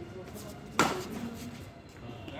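A single sharp crack of a badminton racket striking a shuttlecock, a little under a second in.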